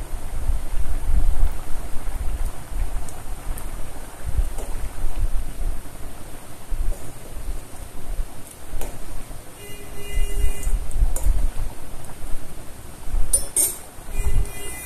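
Thick pumpkin-and-bean curry bubbling as it simmers in a steel pot, with a steel spoon stirring through it partway along.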